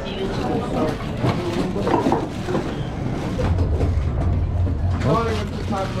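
Riders' voices chattering in the dark ride vehicle. A low rumble sits under them from about three and a half to five seconds in.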